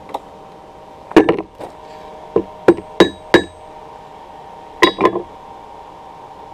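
Hand hammer striking thin iron wire on an anvil while shaping a fish hook: about eight sharp blows in irregular groups, two, then four in quick succession, then two more near the end, some leaving a bright metallic ring.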